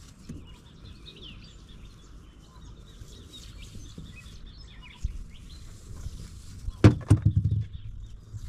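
Birds chirping faintly in the background over a low rumble of outdoor noise. About seven seconds in comes a quick run of loud knocks and thumps.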